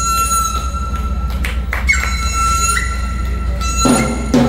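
Chinese bamboo flute (dizi) holding one long high note, which leaps up about halfway through and then steps back down, over a steady low hum. A drum strikes right at the end.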